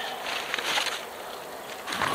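Nylon backpack being handled and rummaged after unzipping: fabric rustling and scraping, with a few faint clicks as its contents are moved. It is busier in the first second, then quieter.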